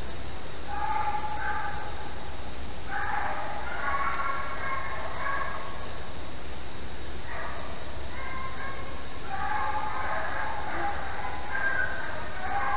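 A pack of beagles baying as they run a hare's trail, in several bursts of overlapping howls of different pitches with short pauses between. A steady background hiss runs underneath.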